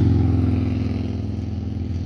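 A low, steady engine rumble, loudest at the start and easing off a little.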